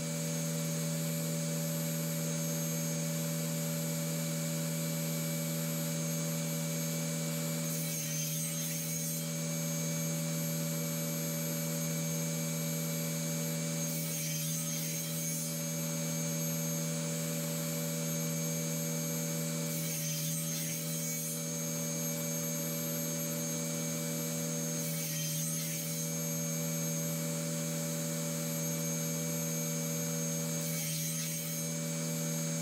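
Wood screws being driven by hand with a screwdriver into oak to fasten metal brackets, a rubbing, grinding sound of screw turning in wood. Underneath runs a steady machine hum of several tones, and a brief hiss comes back every five to six seconds.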